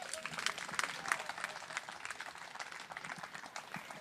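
Audience applauding at the end of a talk, a dense patter of handclaps that thins out and fades toward the end.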